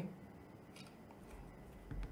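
Faint, short shutter click from a Samsung Galaxy A04s phone camera taking a photo, a little under a second in, followed by low rumble from handling the phone.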